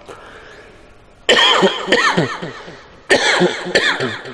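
A man sobbing into a microphone during a prayer: two loud wordless outbursts, the first beginning just over a second in, each about a second long with a wavering pitch that keeps falling away.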